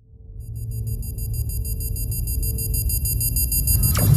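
Outro music in a cinematic sound-design style: a low rumble swells up from silence under a steady high-pitched ringing tone, building to a sharp hit at the very end.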